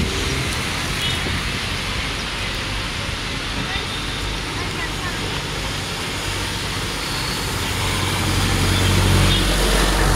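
Traffic in the rain: a steady hiss of rain and tyres on wet pavement, with a vehicle engine getting louder near the end as cars approach.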